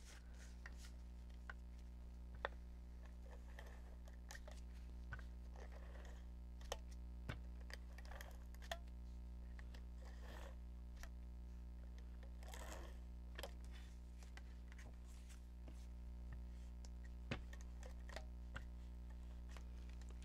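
Faint paper handling on a craft desk: cardstock slid and pressed down by hand, with scattered soft clicks and a couple of brief rustles. A steady low electrical hum runs underneath.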